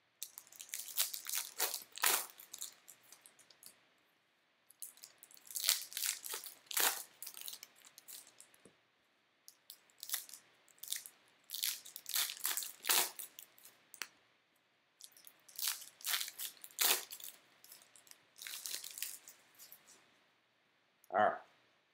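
Baseball card pack wrappers crinkling as packs are opened and the cards handled, in four clusters of sharp crackly bursts with short pauses between.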